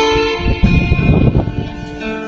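Acoustic guitar played solo: a sharp strum at the start, then a burst of rapid strumming in the middle before single held notes return.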